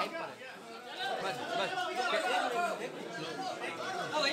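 Several people talking at once in a room: overlapping, indistinct chatter of a small group.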